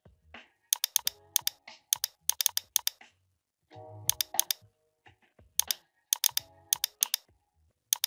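Typing on a computer keyboard: several short bursts of quick keystrokes with pauses between them, over soft background music.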